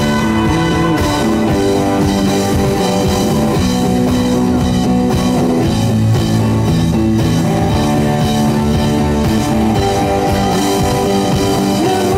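Live pop-rock band playing an instrumental passage, with electric guitar over a drum kit, loud and steady.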